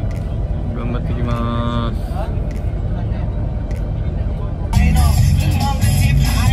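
Steady low rumble of a coach bus heard from inside the passenger cabin, with a short pitched tone about a second in. Louder music with a voice comes in near the end.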